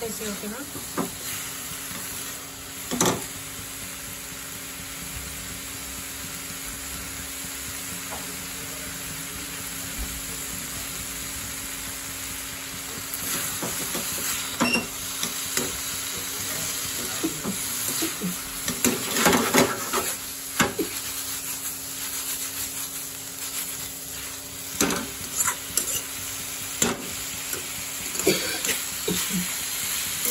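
Masala-coated chicken pieces sizzling in oil in a kadai while a spoon stirs them. Over the steady frying hiss, the spoon scrapes and knocks against the pan now and then, most busily about two-thirds of the way through.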